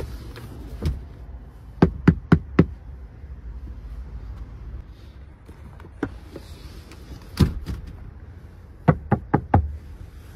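Sharp plastic-and-upholstery knocks from a Volvo V90 Cross Country's rear seatback as its release tab is pulled and the backrest is folded flat: a click, a quick run of four knocks, a single louder knock past the middle, and four more quick knocks near the end.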